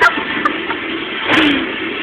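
Metal roll cage trolley rolling and rattling across a shop floor, with a few sharp clicks and a louder clatter about a second and a half in.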